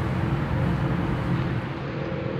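Steady low rumbling background noise.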